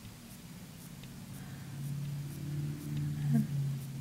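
A soft, low hum of a woman's voice, growing a little louder over the second half, with a few faint small clicks in the first half.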